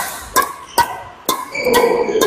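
Badminton rackets striking a shuttlecock back and forth in a fast rally, a sharp crack about every half second.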